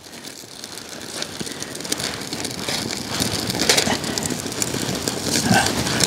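Small wood fire of birch bark and twigs burning in a titanium wood-gas camp stove, crackling with a rushing noise that grows steadily louder as the fire catches.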